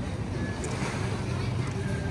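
Steady low rumble of wind buffeting the microphone over general outdoor street noise.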